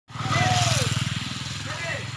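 A small motorcycle passing close by, its engine loud in the first second and then fading as it moves away. Voices can be heard over it.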